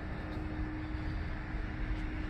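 Steady low rumble of distant road traffic, with a faint steady hum running through it.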